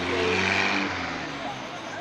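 Double-decker bus's diesel engine running at low speed close by, its pitch shifting slowly, with a hiss that swells about half a second in and then fades, over street voices.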